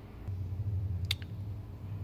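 Faint low hum with a single light click about a second in.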